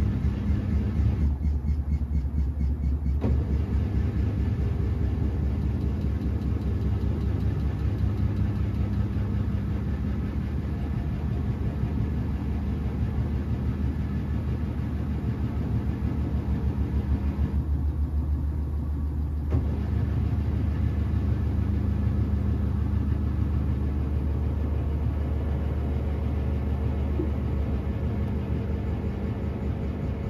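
Samsung front-loading washing machine running, its drum motor humming steadily with a fast even pulse. Twice the higher hiss drops away for about two seconds while the hum carries on.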